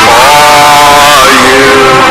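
Voices singing a worship song over a loud sound system: one long held note, then a lower held note near the end.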